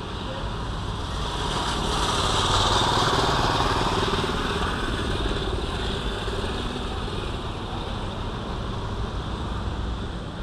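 Street traffic noise, with a vehicle passing close by that swells to its loudest about three seconds in, then steady road noise.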